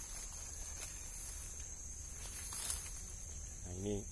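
A steady high-pitched drone of forest insects, with leaves and undergrowth rustling and a few soft crackles as someone pushes through the brush.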